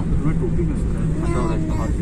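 Car cabin noise while driving: a steady low road-and-engine rumble, with a faint voice briefly over it.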